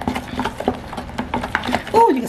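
A spatula stirring thick mayonnaise-based sauce in a plastic container: irregular wet clicks and scrapes against the container's sides and bottom.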